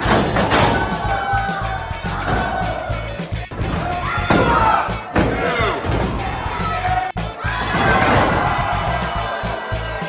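Thuds of wrestlers' bodies hitting the ring canvas, with shouts and cheers from the crowd over music.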